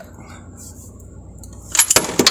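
A steel socket wrench clinking on the 24 mm gearbox drain bolt of a Proton Wira's transmission: a few sharp metallic clicks with a brief ring near the end.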